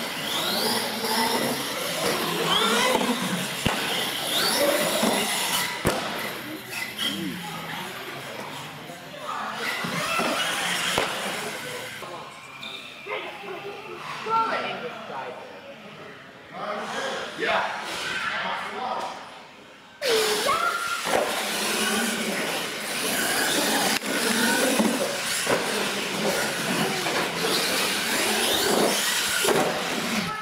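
Indistinct voices of people talking in a large hall, with no clear words. The sound drops lower for several seconds, then jumps back up suddenly about two-thirds of the way through.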